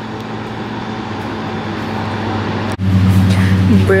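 Steady rushing background noise, then an abrupt cut about three quarters of the way in to a louder, steady low mechanical hum. A man's voice starts over the hum just before the end.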